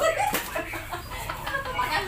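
Several women laughing in high, cackling bursts, with a sharp knock about a third of a second in as the plastic bottle is flipped onto the padded ottoman.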